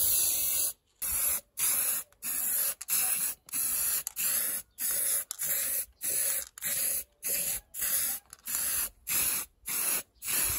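Aerosol spray-paint can sprayed in short, even bursts, about two a second, each a brief hiss with a gap between, coating metal lamp parts.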